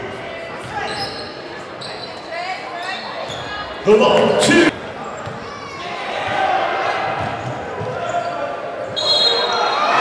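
Basketball game sound on a hardwood gym floor: the ball bouncing, sneakers squeaking and voices of players and spectators in a large hall, with a loud shout about four seconds in.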